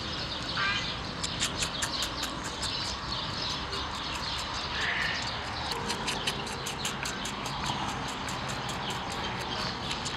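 Small birds chirping in quick, short notes, several a second, over a steady faint hum.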